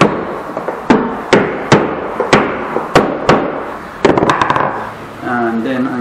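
Claw hammer striking the top rail of a pine planter-box frame: about seven sharp blows, roughly two a second. They are followed about four seconds in by a quick run of lighter taps.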